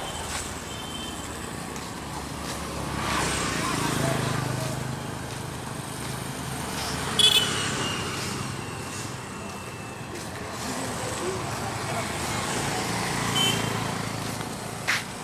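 Road traffic and vehicle noise with people's voices, swelling and fading. A brief sharp sound stands out about seven seconds in.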